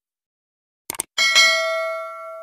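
Subscribe-button sound effect: a quick double mouse click about a second in, then a bright bell ding that rings on, fading slowly.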